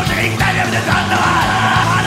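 Progressive thrash metal recording playing: dense distorted guitars and bass over a driving drum beat, loud and unbroken.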